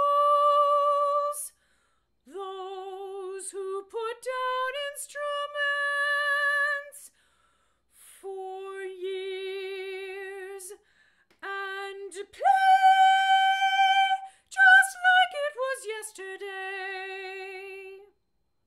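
A woman singing a soprano line a cappella, holding notes with vibrato in short phrases broken by brief pauses. The loudest, highest held note comes about twelve seconds in.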